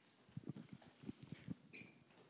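Faint movement noise: about a dozen soft, irregular knocks over a second and a half, ending with a brief faint click.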